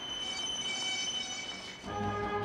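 Pickup truck's brakes squealing with a steady high-pitched whine over road noise as it pulls up. Low, tense music comes in just before the end.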